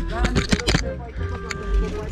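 Background music with held notes. A voice is heard briefly near the start, over a low rumble.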